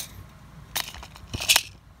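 A few short sharp clicks and a brief metallic rattle, the loudest about one and a half seconds in, typical of hand-held equipment being handled.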